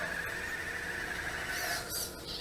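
Meccanoid robot's geared foot drive motors whining steadily as the robot spins in place at fast speed; the whine stops near the end.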